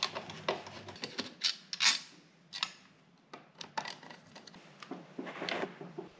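A screwdriver turning out the screws of a metal double wall-socket faceplate: irregular small clicks and brief scraping sounds of metal against metal and tile, then the faceplate being pulled from the wall box.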